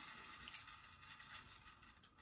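Faint whir of a board-game spinner spinning and slowly running down, with a single click about half a second in.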